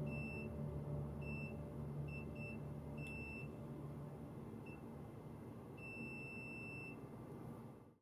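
Digital multimeter in continuity mode beeping as its probes touch pads on a PS4 controller circuit board. A string of short, irregular beeps is followed near the end by one beep about a second long. Each beep marks a connection between the two probed points, as in mapping the board's pins.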